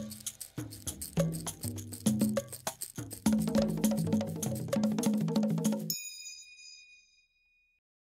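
Closing logo jingle: rhythmic music with quick, sharp percussive strokes over a bass line. It cuts off about six seconds in, leaving a few high ringing tones that fade away.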